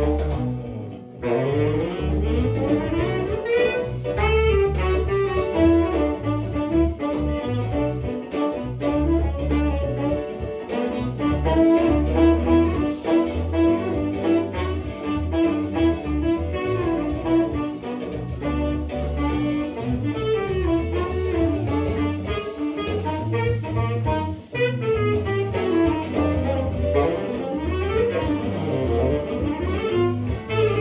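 Live jazz: a saxophone playing a moving melodic line over a walking low bass accompaniment.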